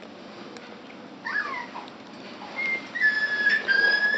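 Westie puppy whining: two short falling whines, then longer high, nearly level whines from about halfway in.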